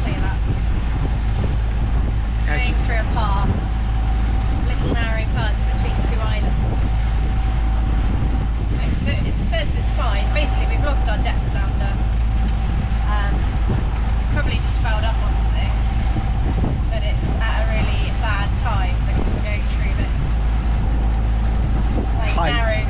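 A sailboat's engine running steadily under way on a calm passage: a loud, even low drone with a steady mid-pitched tone above it.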